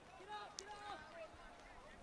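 Faint, distant voices calling out during a touch football match, a few short calls within the first second.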